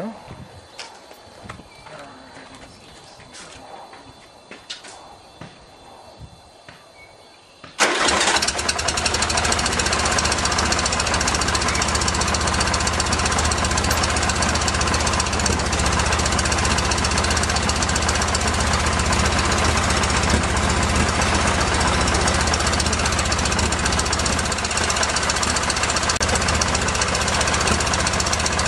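1973 VW Super Beetle's 1745cc air-cooled flat-four, on twin Dellorto FRD 34 carburettors, catches suddenly about eight seconds in and then idles steadily and loudly. Before that there are only faint clicks.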